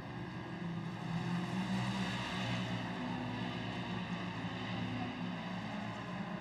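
Pro Modified side-by-side (UTV) race engine running at speed on the dirt track: a steady engine drone whose pitch shifts slightly about halfway through.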